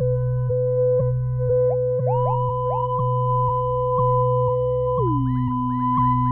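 Electronic music of pure sine tones, with a low drone and layered steady higher tones. New tones enter with short upward swoops, and a soft tick comes about twice a second. Near the end the middle tone slides down an octave.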